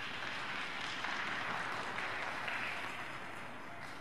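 Spectators applauding in an ice rink, swelling for about three seconds and tapering off near the end.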